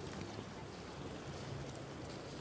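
Faint, steady wash of calm sea water against a rocky shore, with wind on the microphone.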